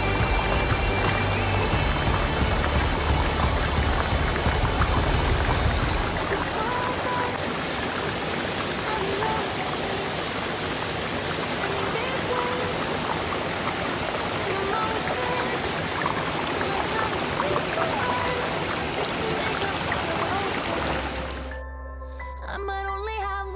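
Waterfall and creek water rushing as a steady, even noise, with a heavier low rumble for the first six seconds, under background music. Near the end it cuts off abruptly.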